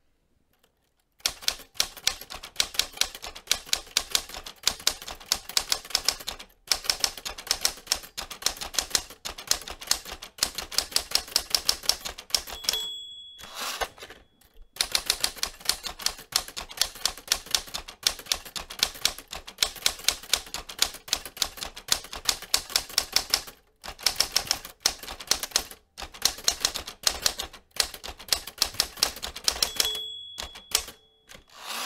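Manual typewriter keys clacking in rapid runs, beginning about a second in, with brief pauses between runs. About thirteen seconds in, the carriage-return bell dings, followed by a short pause before the typing resumes.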